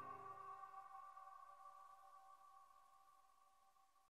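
The last chord of an indie rock song fading out: a few held high tones ring on faintly and die away within the first couple of seconds.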